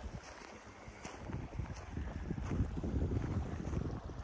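Wind buffeting the microphone: a gusty low rumble that grows stronger about halfway through.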